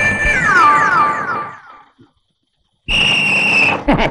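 Comic film sound effect: several tones slide downward together in steps over about a second and a half and fade out. About a second later comes a shrill, steady, whistle-like tone lasting about a second.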